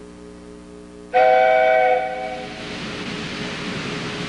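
A steam locomotive whistle blows about a second in, a chord of several tones held for about a second, then fading into a steady hiss of steam.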